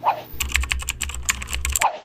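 Rapid computer-keyboard typing, used as a sound effect over a title card: a dense run of key clicks that stops abruptly just before the end.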